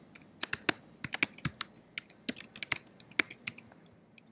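Typing on a computer keyboard: a quick, uneven run of key clicks as a name is typed in.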